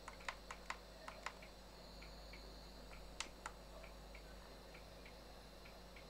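Faint clicks of the small push buttons on the side of a 7-inch Lilliput LCD TV being pressed to step through its menu: about six quick clicks in the first second and a half, then two more about three seconds in.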